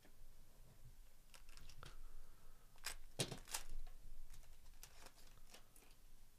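A foil trading card pack crinkling and tearing open, with the cards handled: a run of short crackles and clicks, loudest in the middle.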